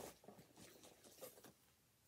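Near silence, with faint rustling of a paper gift bag as a hand reaches in and draws out a small gift; it stops about a second and a half in and the sound drops to dead silence.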